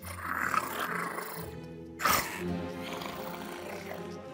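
Baby Albertosaurus sound effect over background music: a rough growl in the first second and a half, then a sudden, louder roar about two seconds in.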